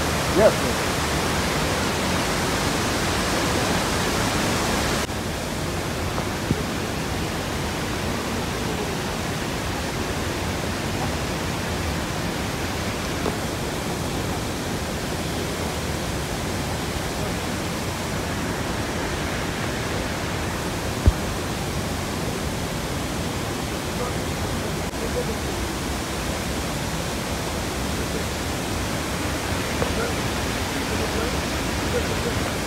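Steady rushing of a waterfall, dropping a little in level about five seconds in, with one sharp click about two-thirds of the way through.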